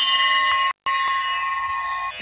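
A puja hand bell ringing steadily, with one clear tone and many higher overtones. The sound cuts out completely for a moment about three-quarters of a second in.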